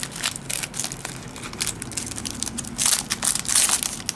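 Foil baseball-card pack wrapper crinkling as it is peeled open and handled, in irregular crackles that grow louder near the end.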